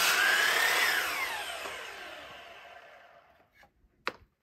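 Sliding compound miter saw finishing a cut through a rough-cut sawmill board: the motor's whine rises as the blade clears the wood, then falls and fades out over about two and a half seconds as the saw winds down after the trigger is released.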